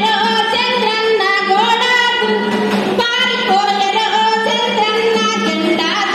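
A female voice singing a song into handheld microphones, amplified, with long held notes that slide up and down in pitch.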